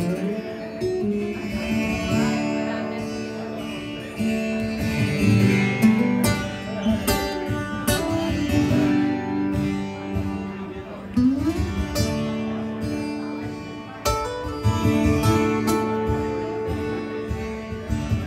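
Live band playing a slow, soft traditional country-style song, led by strummed acoustic guitar under sustained notes, with one rising sliding note about eleven seconds in.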